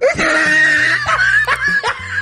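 High-pitched laughter that starts suddenly as one long held note, then breaks into quick repeated bursts of laughing from about a second in.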